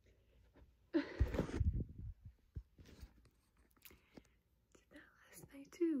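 A woman whispering briefly about a second in, then near silence, with her hushed voice starting again just before the end.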